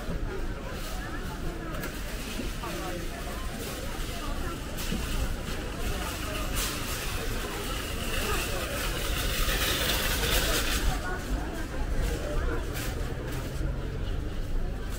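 Outdoor crowd hubbub of many shoppers talking, with a car moving slowly past at the start. Shopping trolleys rattle on concrete, loudest from about seven to eleven seconds in.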